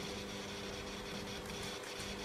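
A steady low hum with a few fixed tones and a faint even hiss, with no distinct knocks or steps.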